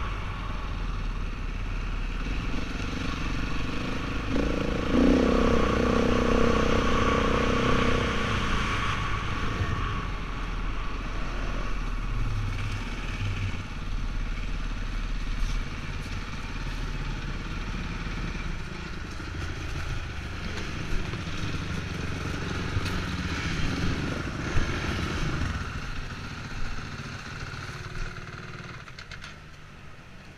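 Off-road vehicle's engine running under way, with wind rushing over the microphone. The engine pulls harder for a few seconds early on, then eases off and quietens as the vehicle slows and stops near the end.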